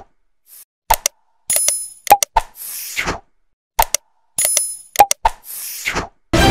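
End-screen animation sound effects for a like and subscribe graphic. A set of quick clicks, a bell-like ding, a pop and a swishing whoosh plays as a sequence, and the sequence repeats about every three seconds, twice.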